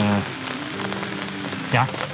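Steady rain falling, an even hiss of drops around the microphone.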